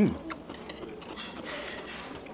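A short hummed "mm", then chewing of crunchy kimchi: scattered small crunches and clicks.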